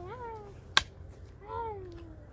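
A single sharp strike of a pickaxe on stony ground a little under a second in, the loudest sound, between two short wavering high-pitched calls that rise and fall in pitch.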